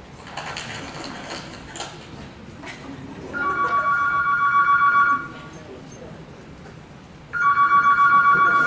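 Telephone ringing twice, a fluttering two-tone electronic ring of about two seconds each with a two-second gap, heard over the hall's loudspeakers.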